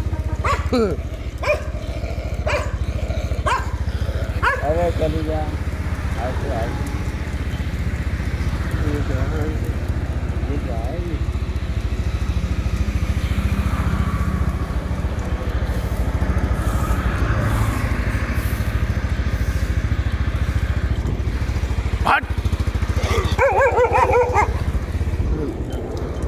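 A steady low rumble of a motorbike moving along while a Dogo Argentino runs beside it on a leash. There is a short laugh about five seconds in, and the dog gives a short wavering cry near the end.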